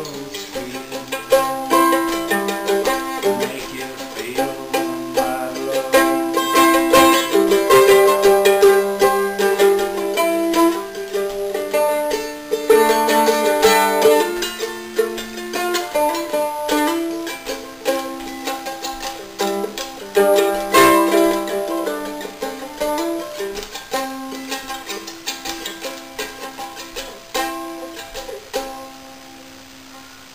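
Mandolin played solo, an instrumental passage of picked melody and chords with stretches of fast repeated picking. It grows louder in the middle, then dies away and stops just before the end.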